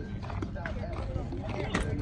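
Background voices of players chatting over a steady low rumble outdoors, with a couple of sharp clicks, the clearest near the end.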